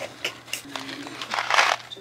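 Cardboard candy box being handled and rustled, with a short low murmur from a voice partway through.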